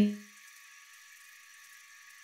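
A woman's voice breaks off right at the start, then near silence with only a faint high hiss.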